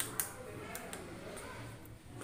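Two short, sharp clicks right at the start, then faint background voices.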